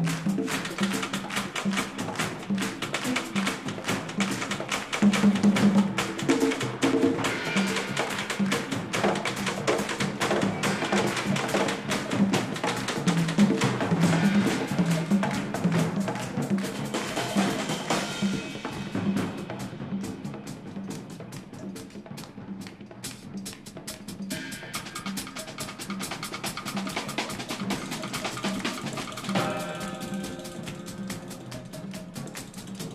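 Jazz-rock band playing live: busy drum kit and hand percussion over a repeating electric bass line. About eighteen seconds in the cymbals and high drum strokes drop back, and a few seconds later sustained higher notes come in over the rhythm.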